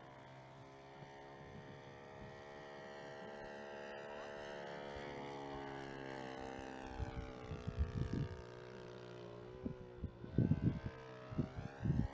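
Engine of a radio-controlled model biplane running in flight, its pitch slowly dipping and rising as the plane moves across the sky. Gusts of wind buffet the microphone about seven seconds in and again near the end.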